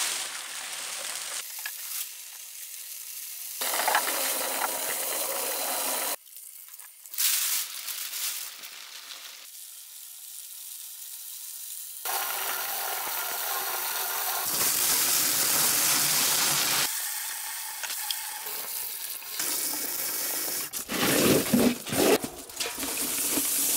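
Aluminium soda cans being crushed and torn apart in a twin-shaft shredder: a dense crackling and crunching of thin metal. It comes in short segments with abrupt cuts between them. Near the end, shredded can pieces rattle as the bin holding them is moved.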